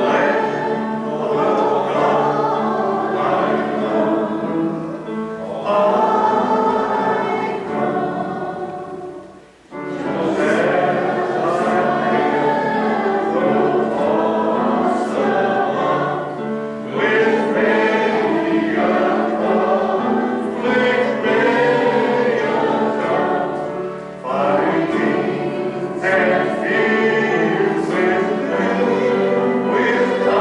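A hymn sung by a group of voices together, in sustained phrases with a brief break about ten seconds in and another near the end.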